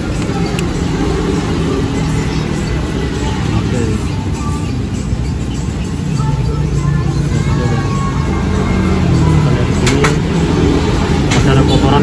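Street traffic noise: motor vehicle engines running and passing, a steady rumble with an engine hum that swells in the second half.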